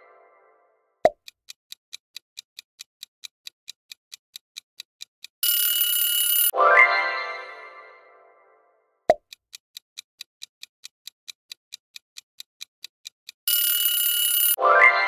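Quiz countdown-timer sound effects in a repeating cycle: a short pop, then clock-like ticking about four times a second for some four seconds, then a second of alarm-like ringing as time runs out, then a bright chime that fades over about two seconds. The cycle starts again about nine seconds in and ends on the ringing.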